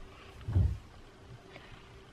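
A single short, low, dull thump about half a second in, against quiet room tone.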